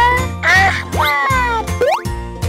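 Playful children's background music over a steady bass line, with squeaky sliding cartoon-style tones that rise in pitch about halfway through and again near the end.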